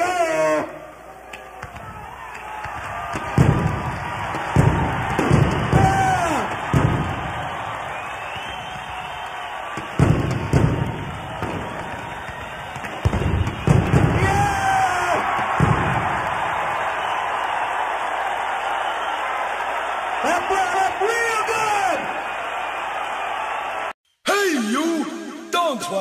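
A large stadium crowd cheering and shouting over a run of heavy booms and bangs as explosives blow up a crate of disco records; the bangs come in a cluster from a few seconds in until about two-thirds of the way through, and the crowd noise carries on after them.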